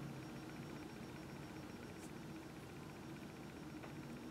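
Quiet room tone: a faint steady hum and hiss, with one faint tick about halfway through.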